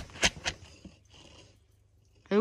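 Wire mesh of an animal enclosure rattled in quick sharp knocks, about four a second, to wake the raccoons inside; the knocks stop about half a second in.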